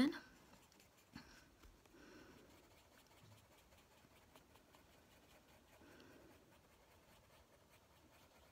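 Faint scratching of a Prismacolor coloured pencil on paper, pressed quite hard in tiny circles (scumbling) to lay down colour. A light tap comes about a second in.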